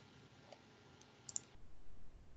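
A few faint, sharp clicks over quiet room tone: one about a second in, then a quick pair just after.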